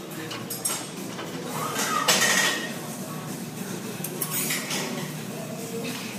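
Rustling and light clattering from a handheld phone being moved about, with scattered small clicks and a louder rustle about two seconds in.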